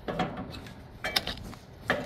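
Handling noise from a rubber V-belt being moved in gloved hands against a sheet-metal blower housing: a few short clicks and knocks, a cluster of them about a second in and one more just before the end.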